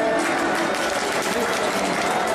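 An erhu's last note ends at the very start, then an audience breaks into applause: dense, steady clapping.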